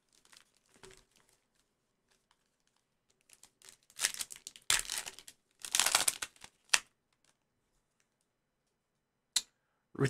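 Foil trading-card pack wrappers crinkling and tearing open in a few short bursts between about four and seven seconds in, then a single light click near the end.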